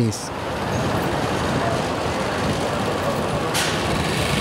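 Street traffic noise with a steady vehicle engine rumble, and a brief sharp hiss about three and a half seconds in.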